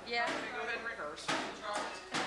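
Indistinct voices chattering, with short knocks about a second and a quarter in and again near the end.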